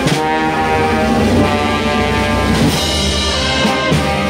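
Municipal wind band playing a processional march, brass holding full sustained chords over a strong bass, with drum strokes at the start and again near the end.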